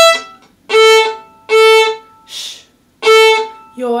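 Violin bowed on open strings in the 'ice cream, shh, cone' practice rhythm: the last note on the open E string, then on the open A string two short notes, a whispered 'shh' rest and a final note. The bow alternates down and up.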